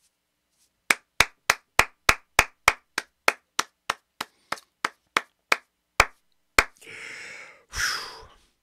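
A person clapping steadily, about three claps a second, the claps spacing out and stopping a little before the end, followed by a breathy rush of noise.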